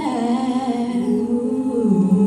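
A female soloist singing over an a cappella group humming sustained chords behind her. The notes are slow and held, gliding down near the start.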